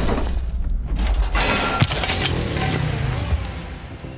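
Cartoon crash effect of a concrete wall smashing apart, chunks breaking and clattering, with a second sharp impact about two seconds in, over background music. The crash fades toward the end.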